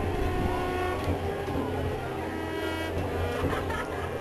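High school marching band playing a soft, sustained passage of held chords, over a steady low hum.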